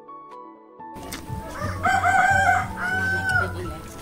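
A rooster crowing: a cock-a-doodle-doo of several short rising-and-falling notes ending in a longer held note, over soft background music.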